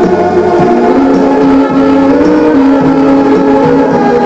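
Music playing loudly through a Lasonic TRC-931 boombox: sustained, organ-like held notes with a slow melody line stepping from note to note.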